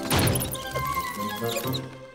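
A large wooden door shutting with a heavy thud right at the start, the loudest sound here and dying away within about half a second, followed by background music with held tones.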